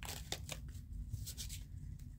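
Faint rustles and a few light clicks of tarot cards being handled in the hands, over a low steady room hum.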